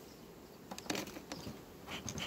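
Faint buzzing of honeybees around the hives, with a few light clicks about a second in as the bee smoker is handled.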